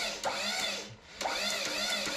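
Metal squealing from a tube bender's die and pins as they are worked by hand: three drawn-out squeaks, each rising and then falling in pitch.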